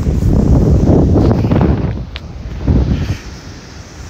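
Wind buffeting the phone's microphone outdoors as a low rumble in gusts, strongest in the first two seconds, surging again briefly and dying down near the end.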